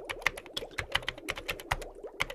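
Keyboard-typing sound effect: a quick, irregular run of sharp key clicks, about eight a second, as the title text appears letter by letter.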